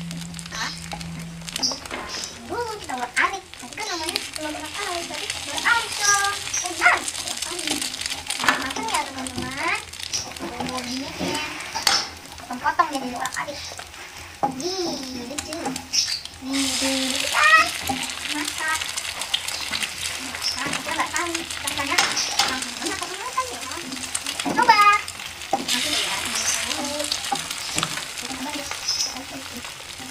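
Scrambled eggs frying in hot oil in a frying pan, sizzling while a wooden spatula stirs and scrapes them around the pan.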